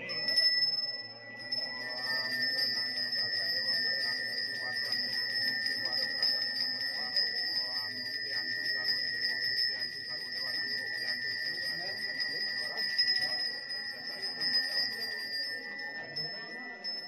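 Balinese priest's hand bell (genta) rung without pause during temple prayers: a steady high ringing with a fast shimmer, over voices.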